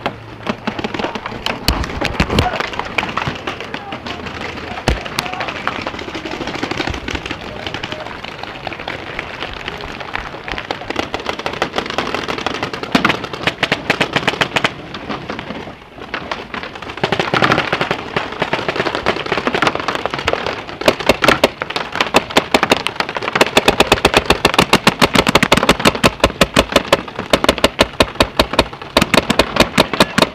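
Paintball markers firing in rapid volleys of sharp pops, some close and some across the field. A dense, fast string of shots takes over in the last third and is the loudest part.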